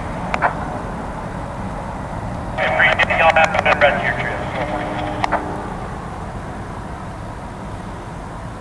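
Diesel locomotive of an approaching CSX freight train running with a steady low rumble. About two and a half seconds in, a thin, narrow-sounding burst of voice cuts in for nearly three seconds, like radio chatter.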